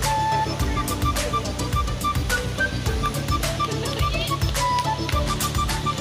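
Background music with a steady beat over a bass line and a short repeating melody.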